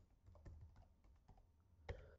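Faint, irregular keystrokes on a computer keyboard as an email address is typed in, with one louder click near the end.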